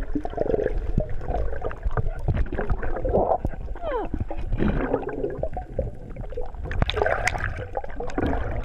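Underwater sound recorded through a GoPro HERO3 Black's waterproof housing: continuous gurgling and sloshing of water, with scattered clicks and knocks and a few short gliding tones about three to four seconds in.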